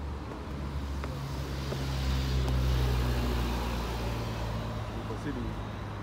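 Road traffic passing on a multi-lane road: a vehicle's low engine hum and tyre noise swell to their loudest a couple of seconds in, then ease off.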